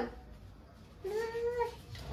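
A toddler's single drawn-out vocal call, about a second in and lasting under a second, its pitch rising slightly.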